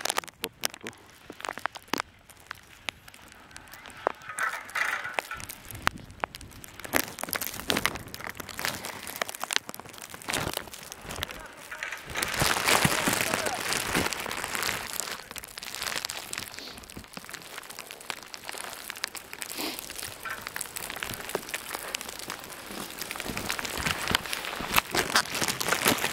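Skis sliding and crunching over snow, with many sharp clicks and scrapes and a louder stretch about halfway through; muffled voices at times.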